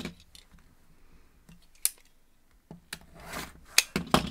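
Rotary cutter slicing cotton fabric along the edge of an acrylic quilting ruler on a cutting mat, with a short cut a little past three seconds in. Sharp taps of the ruler and cutter being handled and set down come at the start, near two seconds and near the end.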